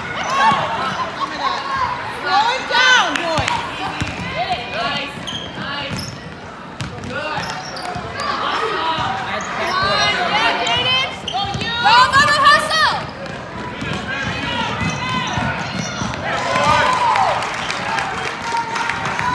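A basketball being dribbled and bouncing on a hardwood gym floor during a youth game, with voices from players and the sideline ringing through the large gym.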